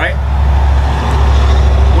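A road vehicle passing: a steady low rumble with a wash of road noise that swells through the middle.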